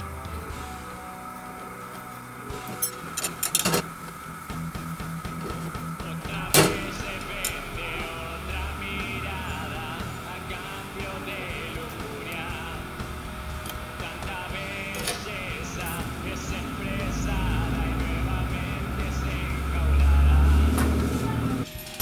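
Background music, with a few sharp metallic clicks from a fork working against a cast-iron pizzelle iron, and a louder low rumble near the end.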